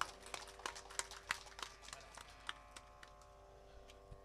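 Faint, scattered handclaps from a small audience, irregular and thinning out towards the end, over a faint steady hum.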